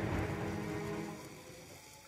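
A low sustained tone made of several steady pitches. It swells near the start and then fades away over about a second and a half.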